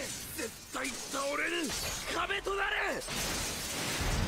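Anime soundtrack: a man's strained shouts, several in a row, over a crackling, shattering sound effect that builds from about halfway in and carries on after the shouting stops.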